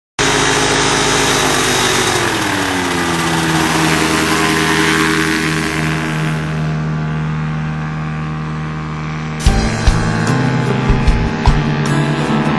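Ultralight plane's engine and propeller running steadily, its pitch dropping a little about two seconds in. About nine seconds in, music with a hard drum beat comes in over it.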